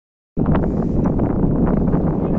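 Wind buffeting the microphone: a loud, steady low rumble that starts abruptly about a third of a second in.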